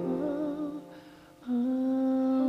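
Slow pop ballad near its close: a sung note with vibrato fades out, a short lull follows about a second in, then a new held note comes in.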